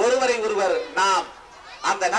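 A man speaking loudly in Tamil into a microphone in long, emphatic phrases, with a short pause a little past the middle.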